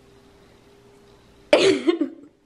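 Quiet room tone for about a second and a half, then a short, sudden burst from a person's voice near the end.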